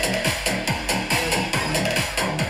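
Electronic dance music from a live DJ set played through a stage PA, driven by a steady, fast kick-drum beat.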